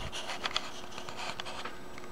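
Quiet room tone with a faint steady hum and a few light clicks about half a second in.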